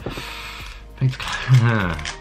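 Foil Pokémon TCG booster pack wrapper being torn open, a crinkling rustle in the first second. A man's voice takes over about a second in.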